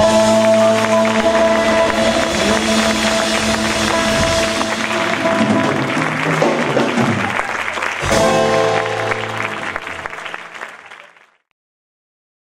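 Live Latin band holding its final sustained chord over audience applause. A last chord is struck about eight seconds in, and the sound then fades out to silence just before the end.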